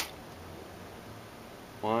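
A sharp click as the motorcycle's ignition key switch is turned on, then a faint, steady low hum.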